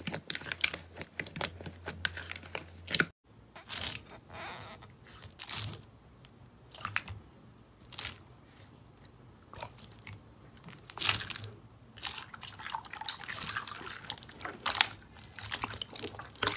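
Hands working slime: glossy slime clicking and popping under the fingers for about three seconds, then clear slime packed with foam beads crunching and crackling in short bursts, about one a second, as a hand presses and squeezes it.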